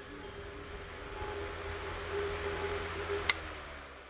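A steady hissing drone with a low hum and one held mid-pitched tone, broken by a single sharp click about three seconds in, then fading away as the track ends.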